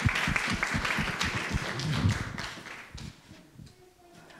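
A congregation applauding, the clapping dying away about three seconds in.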